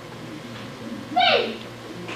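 A man's short vocal exclamation about a second in: a single hoot-like sound that falls in pitch, over a steady low hum of the room.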